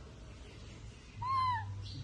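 Baby monkey giving one short, high call about a second in, lasting about half a second, rising a little in pitch and then falling away.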